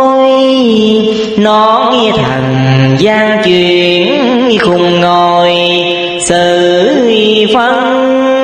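Chant-style music of Vietnamese Buddhist verse recitation: long held notes with vibrato that slide from one pitch to the next every second or two.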